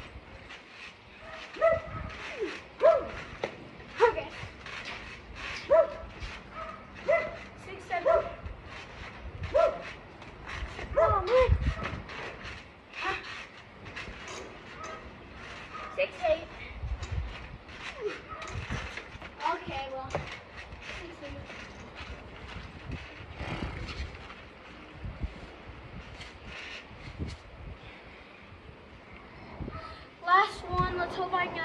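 A dog barking in short repeated barks, often every second or so in the first half and more sparsely later, with a few dull thumps among them.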